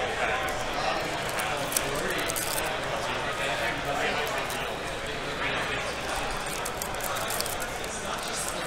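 Steady crowd chatter in a large hall, with the crinkle of foil card-pack wrappers being handled and torn open.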